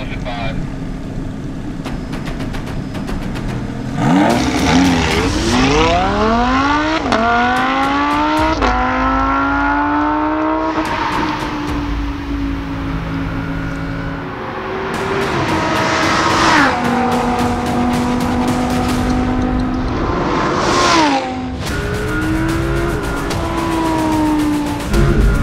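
Lamborghini Huracán's V10 engine idling, then accelerating hard from about four seconds in. Its pitch climbs steeply and drops back at each quick upshift, eases into a steadier run, then climbs twice more, each climb cut off by a sudden drop in pitch.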